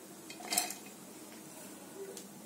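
Dry split lentils poured into a stainless steel mixer-grinder jar, a brief metallic rattle about half a second in.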